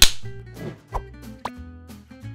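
Film clapperboard snapped shut once, a single sharp clap at the start, followed by background music with held tones.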